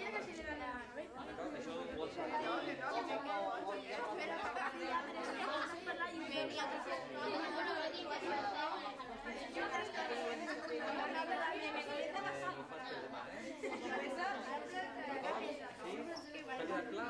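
A group of children chattering, many voices talking over one another at once with no single voice standing out.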